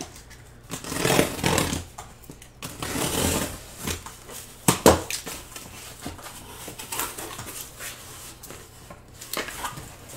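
A cardboard shipping case being opened by hand: the packing tape along the top is cut and the flaps are pulled back, with scraping and rustling of cardboard in bursts and one sharp knock a little before five seconds in.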